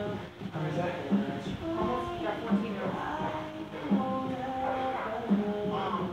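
Background music with a steady beat and vocals.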